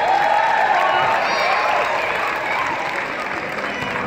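Audience applauding in a large arena, with voices mixed in; the applause slowly dies down.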